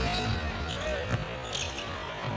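Arena ambience during live basketball play: a low crowd murmur with faint music over the arena sound system.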